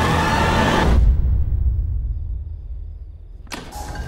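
Trailer score: a tense sustained music bed cuts off about a second in with a deep low boom that fades into a quiet low rumble. A sharp hit near the end brings the music back in.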